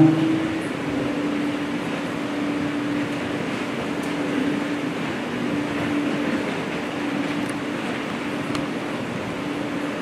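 Steady mechanical hum: one constant low tone over an even hiss, with a few faint ticks.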